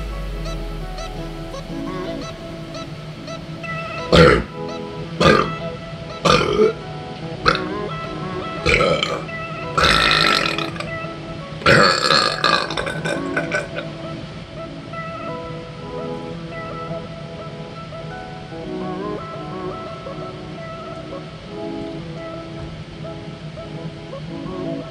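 A man burping loudly several times in a row: a string of short burps, then two longer drawn-out ones about halfway through, over background music.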